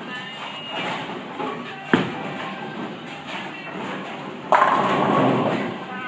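Tenpin bowling shot: a sharp knock about two seconds in, then a loud clatter of pins being struck from about four and a half seconds in. Background music and chatter run underneath.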